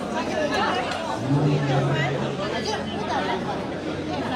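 Audience chatter in a hall: many voices talking at once, none to the fore, with a low steady hum lasting about a second and a half near the middle.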